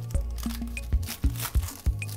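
Background music with a steady beat, over the crinkling and tearing of a foil trading-card pack wrapper being ripped open, loudest about a second in.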